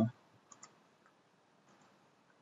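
Computer mouse clicking: two quick clicks close together about half a second in, then a fainter pair near the end. The last syllable of a spoken word trails off at the very start.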